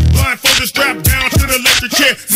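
Hip hop track: rapped vocals over a beat.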